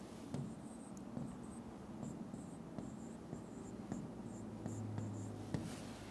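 Faint taps and short high squeaks of a pen writing a short phrase on an interactive display screen.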